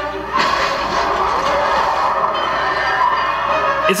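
Film trailer soundtrack: a loud, even rushing noise comes in about half a second in and holds, with faint music beneath it, cutting off near the end.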